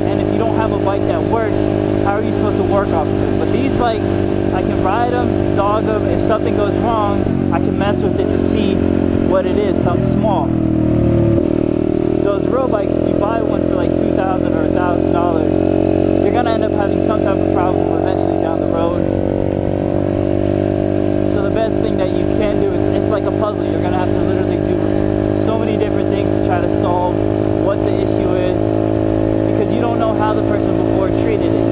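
Chinese dirt bike's engine running steadily under way as it is ridden along a road; about ten seconds in, the engine note sags and then jumps back up a second or so later, as with a gear change or a throttle blip.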